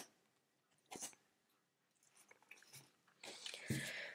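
Near silence, with a faint click about a second in, then soft rustling and a low thump near the end as a deck of tarot cards is handled and squared between the hands.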